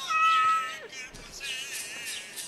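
A cat meowing: one loud, drawn-out call that holds its pitch and then drops at the end, with music underneath.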